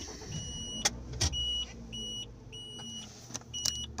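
A car's interior warning chime beeping steadily, about two short beeps a second, over a low hum, with a few sharp clicks in between.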